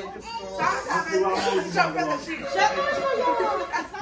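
Several people talking over one another, children's voices among them, as a group chatters during a party game.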